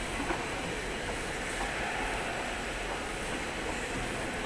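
Steady background noise of a large indoor hall, an even continuous hum with no voices standing out, and one faint tap shortly after the start.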